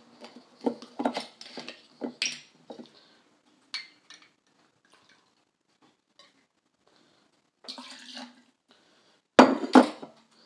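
Metal cap twisted off a glass Bacardi rum bottle with a few small clicks, then rum poured into a cocktail shaker. The glass bottle is set down on a granite countertop with a sharp clunk near the end, the loudest sound.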